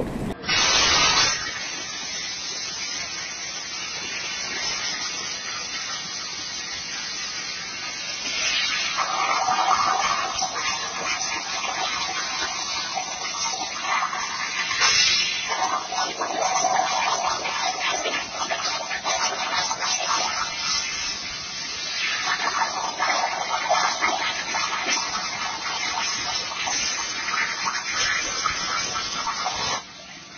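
Computer-operated plasma cutter cutting metal on a water table: a steady hiss from the plasma arc and a gurgling from the water in the table, louder in several stretches.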